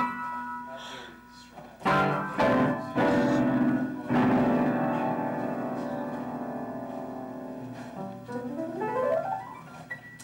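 Upright piano being played: a few loud chords struck in quick succession about two to four seconds in, the last one left to ring and slowly fade, then a quick rising run of notes near the end.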